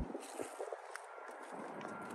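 Quiet outdoor background: a faint steady hiss with a few faint ticks.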